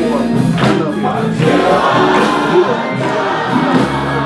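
Gospel choir singing.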